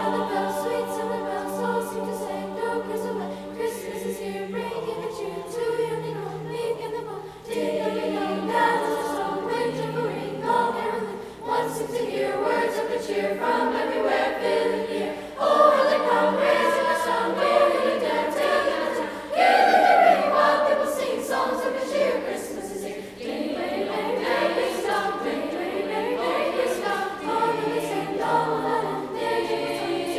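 Youth school choir of mixed girls' and boys' voices singing a song in parts, growing louder in the middle.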